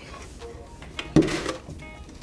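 A plastic gallon milk jug set down on a wooden table: a light knock about a second in, then one loud thud with a brief rustle.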